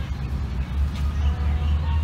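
Outdoor background noise: a steady low rumble with faint, brief high chirps over it.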